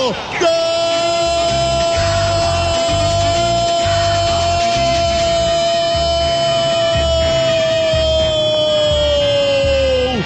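Brazilian radio football commentator's long drawn-out goal cry, one held note lasting about nine seconds that sags a little in pitch near the end, with a rhythmic music beat underneath.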